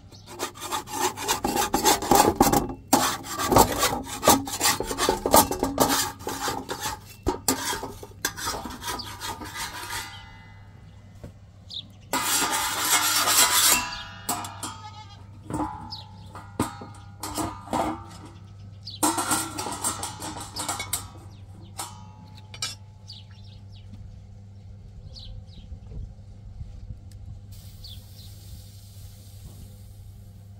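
A flat metal scraper rasping and rubbing across a hot iron saj griddle in bursts of quick strokes, thickest through the first ten seconds, with a longer, louder scrape a little after that and a shorter one later. A low hum runs underneath.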